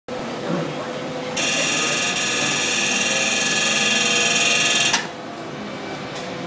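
VISX excimer laser firing a rapid train of pulses to ablate the corneal surface in advanced surface treatment. It is a loud, steady pulsing that starts about a second and a half in and cuts off abruptly about five seconds in.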